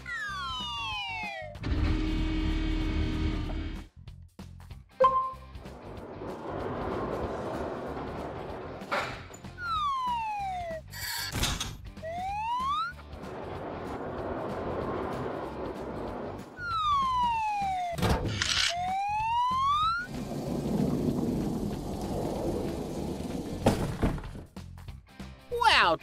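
Cartoon sound effects over background music: falling and rising whistle glides, a steady machine hum about two seconds in, stretches of whirring noise and a few sharp thunks, as an overhead crane moves cargo crates.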